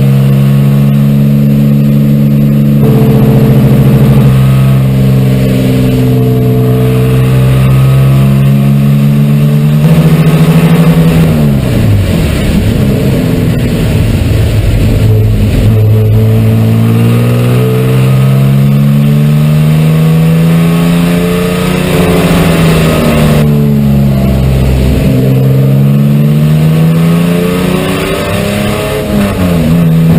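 Subaru race car's engine heard loud inside the stripped, roll-caged cabin under hard driving, its pitch holding, stepping down and climbing again as it revs through the gears. The revs fall deeply about a third of the way in and again after two-thirds, each time climbing back.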